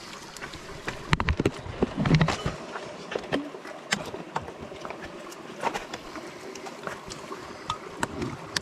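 Scattered light clicks and knocks, with a cluster of heavier thuds about one to two seconds in, over a steady background hiss.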